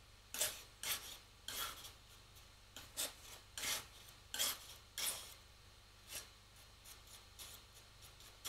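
Metal palette knife scraping and mixing oil paint on the palette in a run of short strokes, about two a second, which thin out and grow fainter after about five seconds.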